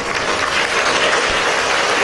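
Audience applauding, swelling over the first half second and then holding steady.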